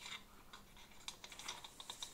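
Thin metal chains of a hanging basket clinking lightly: a quick, uneven run of small clicks that grows busier about halfway through.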